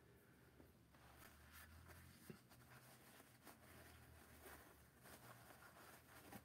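Near silence: room tone with a few faint, scattered small scratches and rustles.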